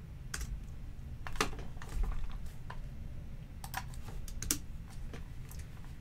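Computer keyboard typing: about a dozen separate, irregular keystrokes, bunched together for a moment about three and a half to four and a half seconds in, over a faint low hum.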